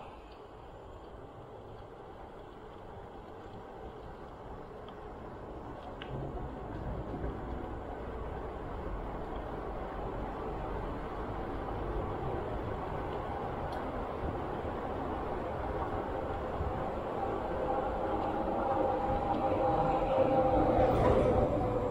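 Steady rumble of wind buffeting the microphone and bicycle tyres rolling on asphalt, growing gradually louder as the bike gathers speed. A faint hum comes in near the end.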